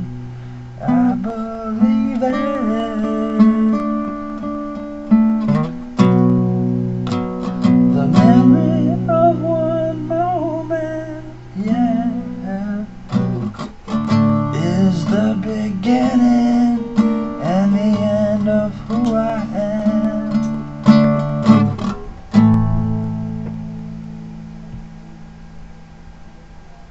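Acoustic guitar strummed and picked through the closing bars of a slow song, ending near the end on a final chord that rings out and fades away.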